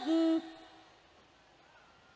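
A woman's solo, unaccompanied voice singing Islamic devotional song (sholawat) holds one steady note that stops about half a second in. What follows is near quiet.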